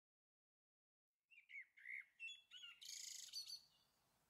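Birdsong starting about a second in: a series of short chirps, then a rapid, higher trill near the end.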